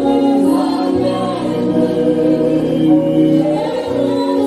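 Church congregation singing a worship song together, with a low steady accompanying note coming in about a second in.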